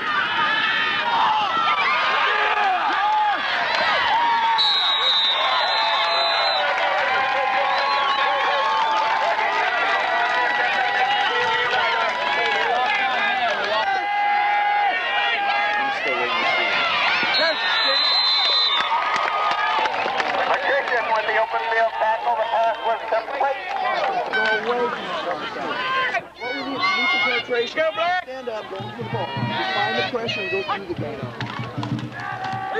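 Crowd of football spectators yelling and cheering, a dense wash of many voices at once, breaking up into more separate shouts near the end.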